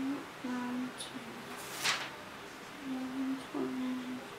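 A woman humming to herself in several short, level notes as she counts under her breath, with a brief rustle about two seconds in.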